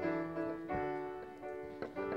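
Piano playing held chords as the introduction to the song, the chord changing about two-thirds of the way through.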